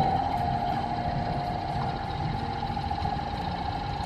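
Waterpulse V660 countertop water flosser's electric pump motor running just after being switched on, a steady hum with a constant whining tone.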